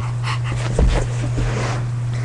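A pet dog breathing and panting close to the microphone in a few short, soft bursts, over a steady low electrical hum.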